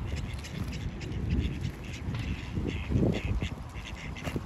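Mallard ducks quacking, a cluster of short quacks about three seconds in, over a low steady rumble.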